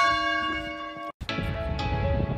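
A single bell-like tone struck once and left ringing, cut off abruptly after about a second. Background music then begins, with chiming notes struck every half-second or so.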